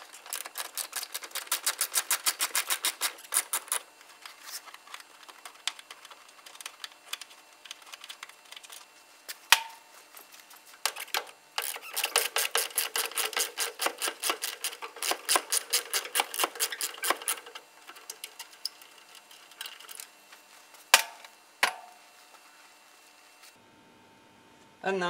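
Ratchet wrench clicking rapidly in runs of a few seconds as bolts are undone, with sparser clicks between the runs and a few louder single knocks of metal on metal.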